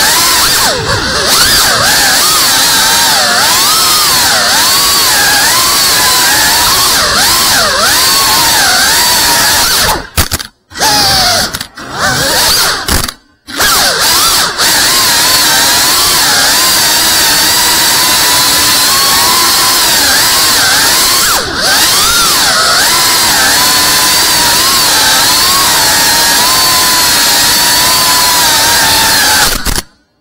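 3.5-inch cinewhoop FPV quadcopter's motors and ducted propellers whining, the pitch rising and falling with the throttle as it flies. The sound cuts out briefly a few times near the middle.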